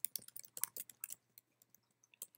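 Typing on a computer keyboard: a quick run of key clicks that thins out after about a second.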